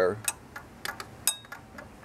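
A handful of light, irregular clicks from a hand socket ratchet moving at the battery terminal, with one short metallic ring a little past halfway.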